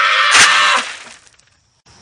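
A short, loud noisy crash with one sharp hit about half a second in, dying away within about a second.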